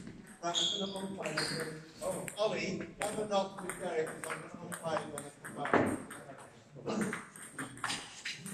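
Table tennis rally: the celluloid ball clicking sharply off bats and the table, over people talking in the hall.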